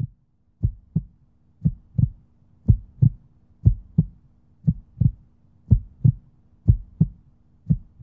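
Heartbeat sound effect: paired low thumps, lub-dub, repeating about once a second over a faint steady hum.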